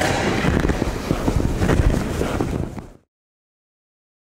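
Dense crackling noise over a low rumble, full of small clicks, typical of handling or movement noise near the microphone; it cuts off abruptly about three seconds in.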